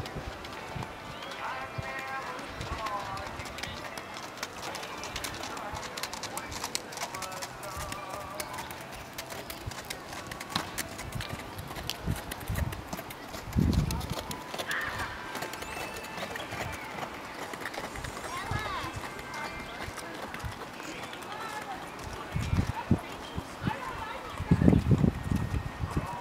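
A horse's hoofbeats at a canter on a sand arena, with people talking in the background. A few heavier low thumps come about halfway through and again near the end.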